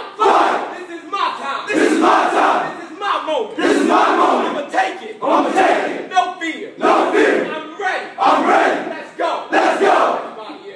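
A football team shouting a repeat-after-me chant: one man calls out a line and the players shout it back together, turn after turn in quick succession.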